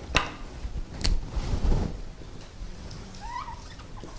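Two sharp clicks about a second apart, then near the end a short squeak of a felt-tip marker on a whiteboard as writing begins.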